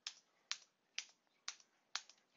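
A computer keyboard's spacebar pressed five times, about two presses a second, each a short sharp click, stepping through photos in an image viewer.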